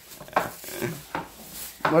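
Kitchen knife cutting vegetables on a wooden cutting board: a few irregular knocks of the blade against the board.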